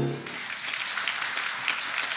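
Congregation applauding, starting about a quarter second in as the last piano chord dies away.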